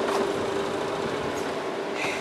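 Engine of a small longline fishing boat running steadily underway: a constant, even hum with a hiss beneath it.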